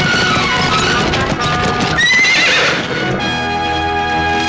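Horses' hooves galloping, with a horse whinnying about halfway through in one wavering call of under a second, over film music.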